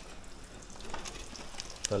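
Egg omelette frying in a frying pan, sizzling steadily, with a few light clicks of a metal utensil against the pan and one sharper click near the end.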